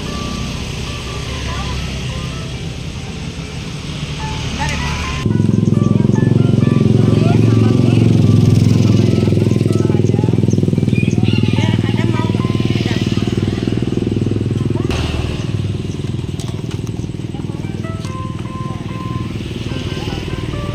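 Steady low motor rumble, which grows sharply louder about five seconds in and drops back about ten seconds later, under music and voices.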